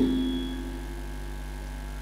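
Steady low mains hum from the microphone and PA loudspeaker system in a pause in speech. The echo of the last spoken word dies away in the first half second.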